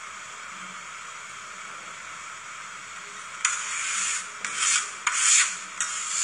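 Metal spatulas scraping across the frosted cold plate of a rolled-ice-cream machine, about four rasping strokes starting about halfway through. Before them only a steady hiss.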